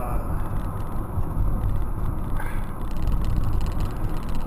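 Steady low rumble of road and engine noise inside a car's cabin at highway speed.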